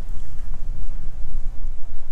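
Wind buffeting the microphone on a sailing catamaran under way: a loud, uneven low rumble.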